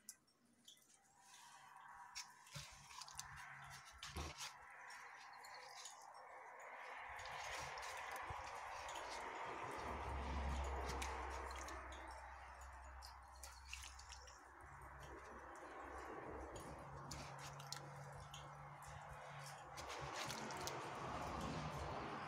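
Faint wet squelching and dripping as a soft fabric toy is squeezed and kneaded by hand in thin, sand-free cement slurry in a small plastic bucket, with small clicks throughout. A low rumble runs for a few seconds around the middle.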